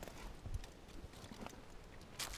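Faint scuffs and a few soft knocks of hands and feet on rock as a climber scrambles up a rocky crack.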